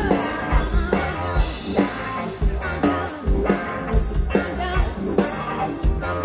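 Live blues-rock band playing: electric guitar and a drum kit keeping a steady beat, with a woman singing and violin.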